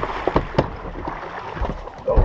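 Rushing wind and water noise with a few sharp knocks of fishing gear being handled as a big fish is netted.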